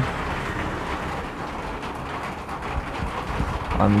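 Steady background noise, an even hiss with a low hum beneath it, with no distinct events.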